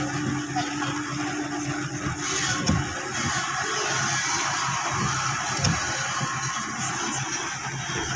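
Vehicle engine and tyre noise on a rough dirt track, heard from inside the cabin: a steady low hum that fades about two and a half seconds in, under a constant rumble with a couple of brief knocks from jolts.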